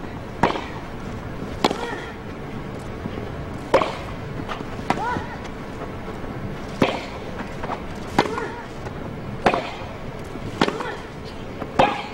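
Tennis ball struck back and forth with rackets in a baseline rally on a grass court: sharp hits, one about every one to two seconds, trading between the two players.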